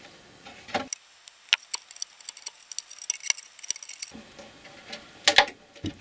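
Scattered light clicks and ticks of pliers working along a plastic headlight lens, pulling out heat-softened Permaseal sealant, with a louder click about five seconds in.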